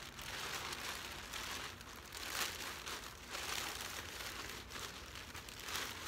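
Black plastic trash bag crinkling and rustling as it is pulled down over a person's head, in uneven surges of crackly rustle.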